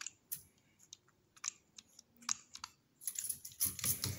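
Light, scattered clicks and taps from a stainless pull-down spring faucet's sprayer head being handled over a stainless steel sink. About three seconds in, a denser, hissy rattle as the sprayer head is fitted back toward its holder on the coiled spout.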